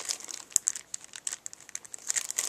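Clear cellophane packets and plastic sticker sheets crinkling as they are handled, in irregular crackles with a sharper snap about half a second in.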